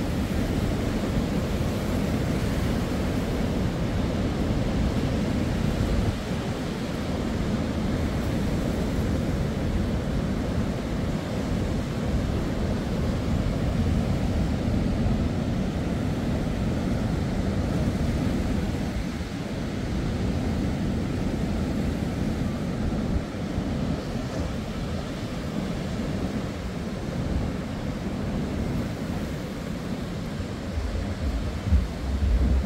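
Choppy sea surf washing and breaking along a seawall in a steady continuous rush, with wind buffeting the microphone and adding a low rumble.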